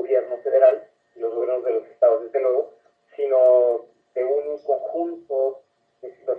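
Speech only: a man talking over a telephone line in short phrases with brief pauses, the voice thin and narrow-sounding.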